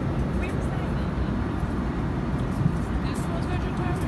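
Steady low drone of an airliner cabin in flight, with engine and airflow noise at an even level throughout.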